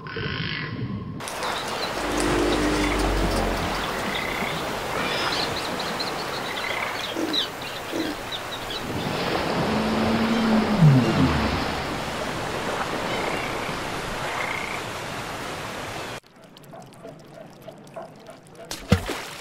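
Sound-effects track of rushing sea water, with short creature-like calls and chirps over it and one long falling groan about ten seconds in; it cuts off suddenly near the end.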